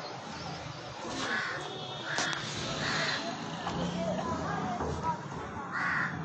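A crow cawing: three harsh caws in quick succession through the middle, and one more near the end.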